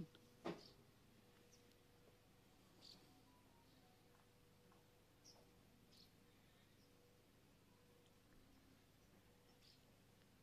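Near silence, broken by a sharp click just after the start and a few faint, short, high chirps from small garden birds spread across the rest.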